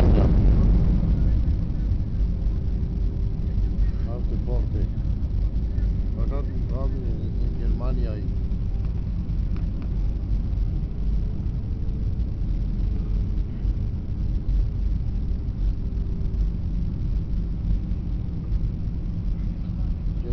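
Jet airliner cabin noise in flight: a steady low rumble of engines and airflow with a faint steady hum, and faint voices in the cabin a few seconds in.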